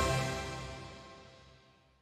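The closing theme music's last notes ringing out after the final hit and fading away to nothing within about two seconds.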